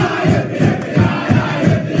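A rugby league club song: a crowd of voices chanting over a steady beat of about two low thumps a second.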